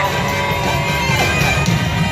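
Live band music played over a concert sound system, with a heavy steady low end and a held high note that slides down about a second in.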